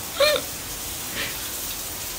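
Peas and spices frying in a pan, a steady sizzle. A brief high-pitched voice sound rises and falls once about a quarter of a second in.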